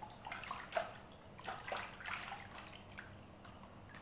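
Water splashing and trickling in a wooden foot-bath tub as hands wash a pair of feet in it: a string of short splashes over the first three seconds, the loudest a little under a second in.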